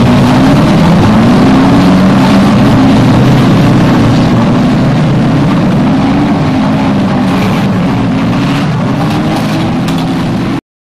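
Car engine running at low speed, its note rising and falling with the throttle, growing gradually fainter as the car moves away.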